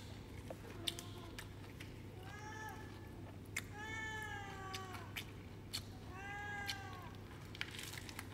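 A cat meowing three times, each call rising then falling in pitch, the middle one the longest, over scattered faint clicks.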